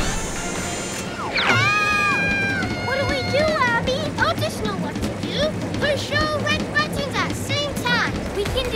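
Cartoon soundtrack: background music under characters' wordless cries. One long cry rises about a second and a half in, holds, and falls away two seconds later, followed by shorter calls.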